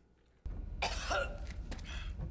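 A low steady rumble from the episode's soundtrack starts suddenly about half a second in, and a person coughs over it just after.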